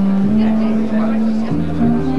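Clarinet theme tune playing held low notes that step from one pitch to the next, with people chattering underneath.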